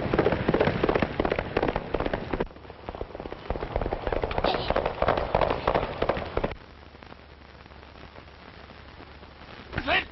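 Racehorse galloping on a dirt track: a rapid clatter of hoofbeats, loud for the first couple of seconds, then fainter until it stops about six and a half seconds in, leaving only the steady hiss of an old film soundtrack.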